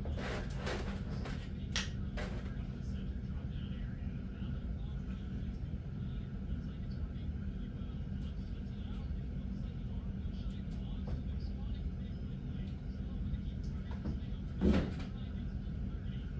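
Steady low hum of room or appliance noise. A few sharp plastic clicks from handling the cap of a plastic milk jug come in the first couple of seconds, and a single knock comes near the end.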